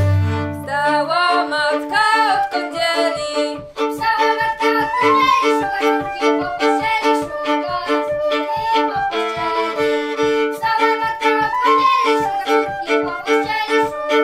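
Traditional Lublin folk tune played on fiddle and flute over a steady frame-drum beat; the deep bowed basy line stops about a second in, leaving fiddle, flute and drum.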